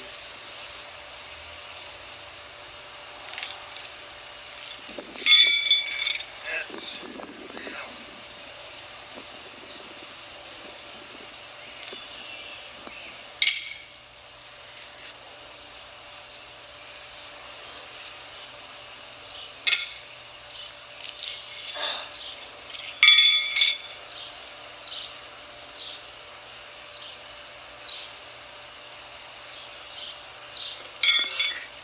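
Steel pitching horseshoes clanking against metal with a ringing clink, twice, and a few sharper single clicks between.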